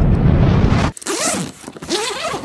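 Zipper of a Lowepro camera backpack being pulled open in two rasping pulls, starting about a second in. Before it, a loud low rumble cuts off suddenly.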